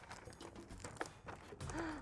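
Faint rustling and crinkling of paper as a two-dimensional paper mask is drawn out of a box, with a few small clicks.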